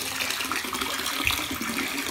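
Tap water running steadily into a partly filled bathtub, splashing into the water.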